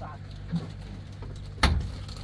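Safari truck's metal door slammed shut with one loud bang near the end, over the truck's engine idling steadily; a lighter knock about half a second in.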